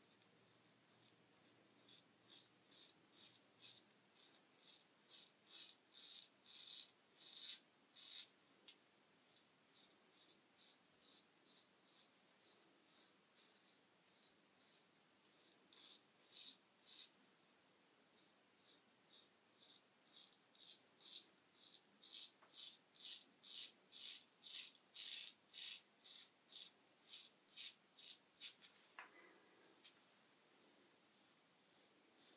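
Faint rhythmic scraping of a Merkur Progress adjustable double-edge safety razor cutting stubble against the grain, in short strokes about two a second with a couple of brief pauses. The razor's dial is set down to about two and a half or three, a milder setting.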